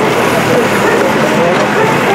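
Excavator's diesel engine running steadily under load as its bucket digs into soil.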